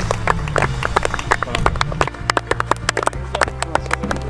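A few people clapping, in quick irregular claps, over background music with low bass notes.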